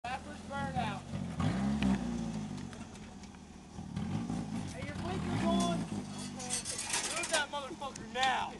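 A small car's engine idling steadily under people talking and laughing, with the voices the loudest thing throughout.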